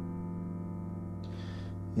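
A chord on an electronic keyboard's piano sound, held and sustaining steadily: the F major seventh over a G bass.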